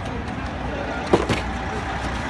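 Outdoor city street ambience: a steady traffic rumble, with a couple of brief sharp knocks a little past halfway.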